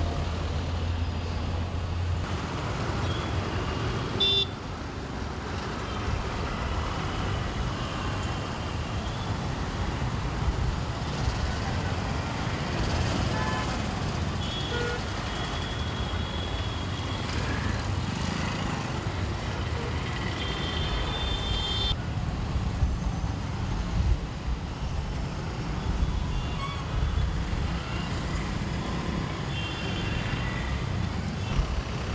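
Dense, slow city road traffic: a steady rumble of truck, bus, auto-rickshaw and motorcycle engines, with short horn toots now and then.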